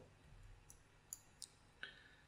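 Faint computer mouse clicks, about four short ones spread over two seconds, against near silence.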